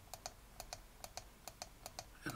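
Light clicking at a computer while the brush is chosen and used on a layer mask: about ten short clicks in two seconds, several in quick pairs.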